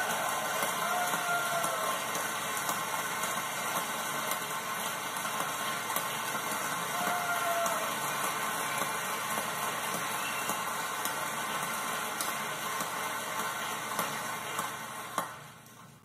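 A large audience applauding steadily, the clapping dying away in the last second or so.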